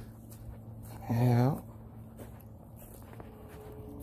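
A man's voice: one short word or hum about a second in, with only faint handling noise and a low steady hum the rest of the time.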